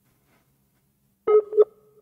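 Skype call tone: after a pause with only a faint hum, two short electronic beeps sound about a second and a half in.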